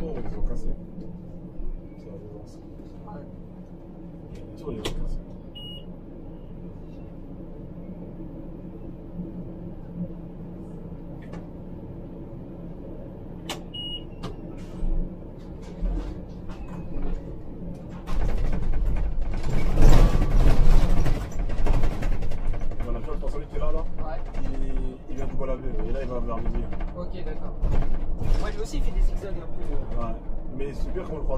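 Cab interior of a Scania Citywide articulated bus running on compressed natural gas: a low, steady engine hum while the bus creeps in traffic, with a few clicks and two brief high beeps. About 18 seconds in the engine grows clearly louder as the bus pulls away, loudest a couple of seconds later, and stays louder to the end.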